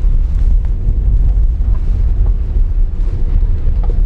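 Steady low rumble of a small Honda car heard from inside the cabin as it drives up an unpaved dirt road: engine and tyre noise, with a few faint ticks from the road surface.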